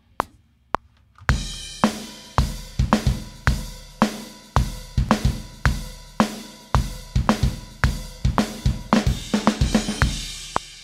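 Metronome ticks about twice a second, then a live multi-miked rock drum kit (kick, snare, hi-hat and cymbals) comes in about a second in and plays a steady beat in time with it. The drums have been sliced and quantized without crossfades, so small clicks and pops sound at the unclean edit points.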